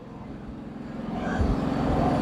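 Engine noise growing steadily louder: a low, steady hum.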